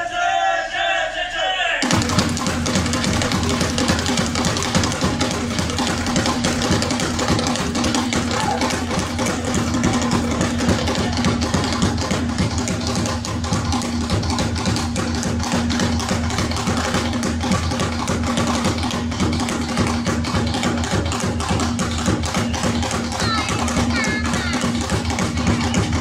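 Traditional Mozambican drum ensemble playing a fast, dense hand-drum rhythm over a steady low held note. A short vocal passage comes before it, and the drumming starts abruptly about two seconds in.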